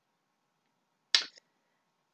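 A single short, sharp mouth click, like a lip smack, a little over a second in, in an otherwise near-silent pause with a faint steady hum.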